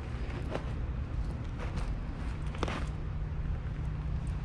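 Footsteps in boots on dry leaf litter and twigs, a few separate steps crunching over a steady low rumble.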